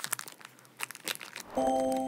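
Faint crinkling of a plastic snack bag as a bottle cap is twisted onto its neck. About one and a half seconds in, a held musical chord starts and is the loudest sound.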